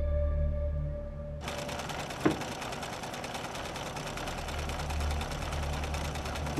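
Sewing machine running at a fast, even stitch rate, starting about a second and a half in, with one sharp click shortly after it starts. Low background music underneath.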